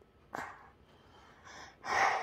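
A young child's short breathy gasps close to the microphone, three of them, the last the loudest near the end.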